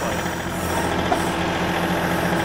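John Deere compact tractor's diesel engine running steadily while its backhoe digs.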